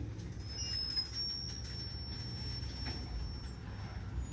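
Freight train of boxcars rolling slowly past, a steady low rumble, with a faint thin high tone held through most of it.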